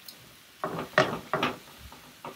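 Kitchen tongs knocking and scraping against a skillet while tossing broccoli florets, a few short clacks in the middle.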